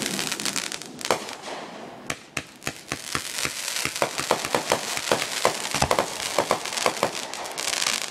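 Consumer fireworks crackling: a rapid, irregular run of sharp pops from crackling stars, growing thicker after the first couple of seconds.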